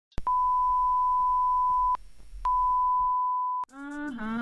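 Two long, steady electronic beeps at one pitch: the first lasts about a second and a half, the second a little over a second, with faint ticking in the gap between them. A humming voice begins near the end.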